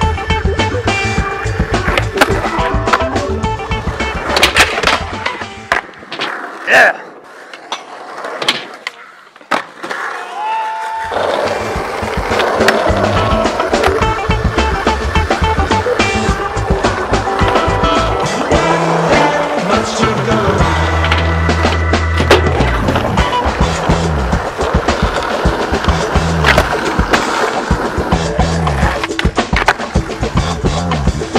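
Music with a heavy bass beat over skateboarding sounds: wheels rolling on a concrete skatepark and the sharp clacks of boards popping and landing. About six seconds in, the beat drops out for several seconds and a few loud clacks stand alone before the music comes back in full.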